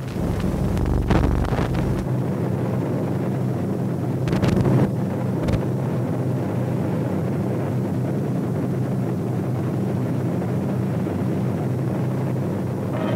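A steady low droning roar on an old film soundtrack, with several sharp thumps in the first six seconds.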